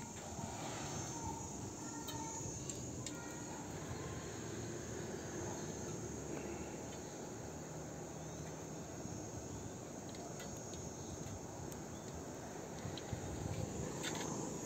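Insects trilling steadily in a high, continuous drone, heard faintly over low outdoor background noise.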